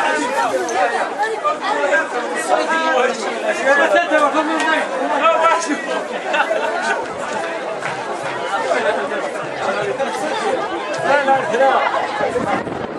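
A crowd of people talking over one another: loud, steady outdoor chatter of many voices with no single speaker standing out.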